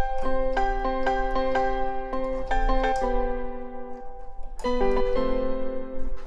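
Dance piano patch from the VPS Avenger 2.1 software synth, played from a MIDI keyboard with the harmonizer's Octave preset, which adds a higher and a lower copy of each melody note. A run of quick repeated notes lasts about three seconds, then a fading lull, and new notes begin near the end.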